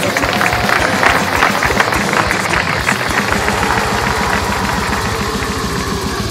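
An engine running, with rapid, even low pulses under a noisy haze.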